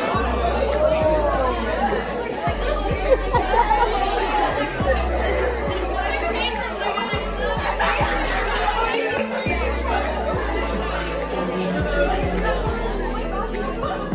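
Many people chattering at once in a large hall, over music with a deep bass line that steps from note to note.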